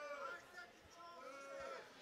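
Faint shouting voices from people around the MMA cage, calling out with a rising and falling pitch.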